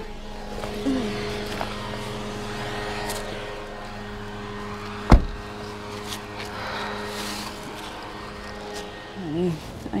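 A car running with a steady low hum, and a car door shut with one sharp thump about five seconds in.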